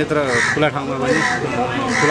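A voice singing a song, holding long notes that waver in pitch, with musical accompaniment.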